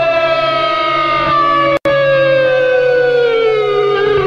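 Music: a long held electric guitar note sliding slowly down in pitch, with a brief dropout a little under two seconds in.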